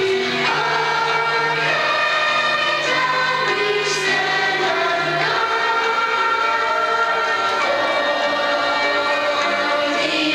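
A large group of schoolchildren singing a song together, holding long notes.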